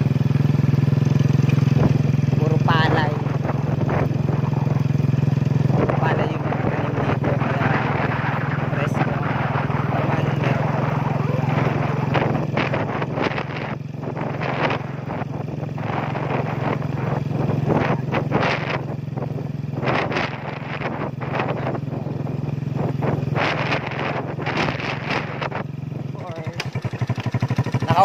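Motorcycle engine running steadily under way, with wind and road rattle over it; near the end the engine note drops to a slow, pulsing idle.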